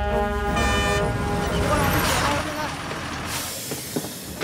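Bus horn tooting briefly near the start, followed by a loud hiss of air brakes that swells and fades over about two seconds.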